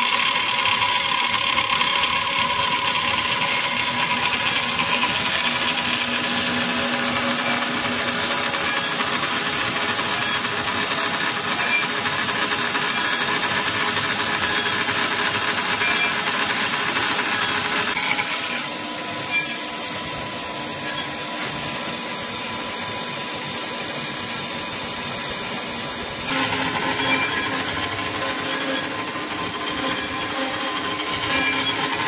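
Horizontal metal-cutting band saw running, its blade cutting through stainless steel stock with a steady grinding hiss and a faint whine. The sound gets quieter about 18 seconds in and louder again near the end.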